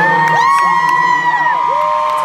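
Concert crowd cheering and screaming, with several overlapping high-pitched screams each held for about a second.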